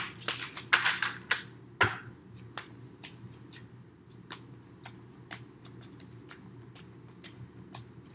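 A deck of tarot cards being shuffled by hand: a run of light card snaps and slaps, louder in the first two seconds with one sharper knock about two seconds in, then softer irregular clicks.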